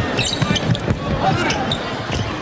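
A basketball bouncing several times on a hardwood court during live play, over the steady noise of an arena crowd.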